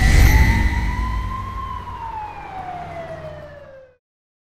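A siren-like sound effect: one wail that rises over the first second and a half and then slowly falls, over a low rumble. It is loudest at the start, fades, and cuts off just before the end.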